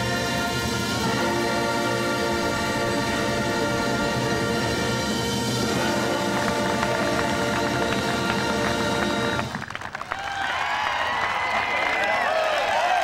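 Marching band brass playing sustained chords, which cut off about nine and a half seconds in. Then a group of men shouting and cheering.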